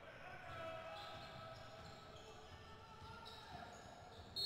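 Faint sounds of a basketball game in a sports hall: a ball bouncing on the court, with short pitched squeaks.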